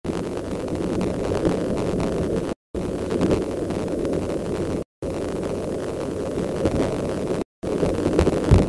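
Wind buffeting the nest-cam microphone: a steady low rumble. The feed cuts out to silence three times for a moment, about every two and a half seconds.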